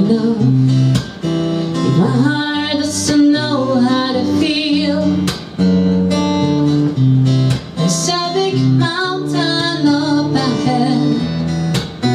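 A woman singing with a strummed acoustic guitar, her voice wavering on long held notes.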